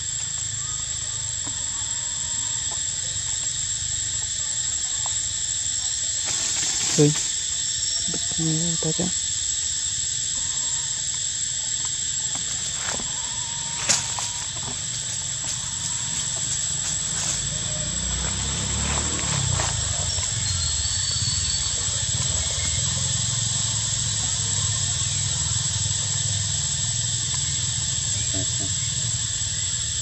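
Steady high-pitched drone of forest insects, unchanging throughout. Two sharp clicks stand out, one about seven seconds in and one about fourteen seconds in.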